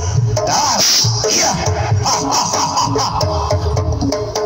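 Live kuda kepang dance music from a gamelan-style ensemble: deep drum strokes in a steady rhythm, ringing metallophone notes stepping through a melody, and bright metallic clashes.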